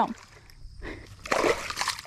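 Water splashing and sloshing in the shallows at the bank as a hooked smallmouth bass is landed. The loudest splashing comes in the second half.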